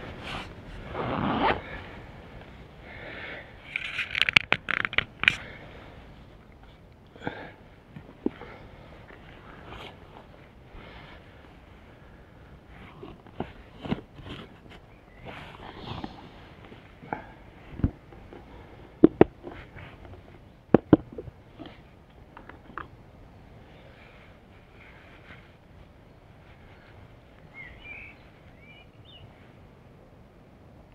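Rustling and handling noise, then scattered sharp clicks and knocks, as a bicycle is walked through woodland undergrowth and leaf litter; the loudest knocks come twice close together about two-thirds of the way in.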